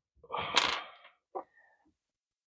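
Small metal connector pins clinking as they are handled on a wooden workbench. A short rustle carries a sharp clink about half a second in, and a lighter clink with a brief metallic ring comes after about a second and a half.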